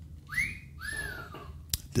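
A man whistling two notes: the first sweeps up and holds briefly, the second starts high and slides slowly down. A short click comes just before the end.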